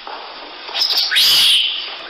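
An infant rhesus monkey gives one high-pitched cry about a second in. It rises sharply in pitch, then holds for about half a second before fading.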